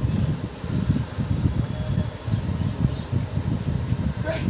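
Low, unsteady rumble of air buffeting the microphone, with no other clear sound above it.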